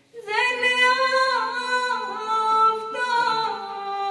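Unaccompanied female singing of a Kashmiri naat, the voice coming in about a third of a second in after a short pause, with long held notes that bend slowly from one pitch to the next.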